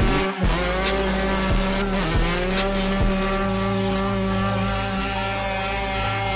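Motorcycle engine held at high revs during a burnout, the rear tyre spinning on the pavement. The revs dip briefly just after the start, climb back and then hold steady.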